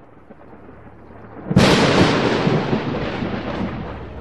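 A low rumble that slowly swells, then a sudden loud boom about one and a half seconds in that rolls on and gradually fades.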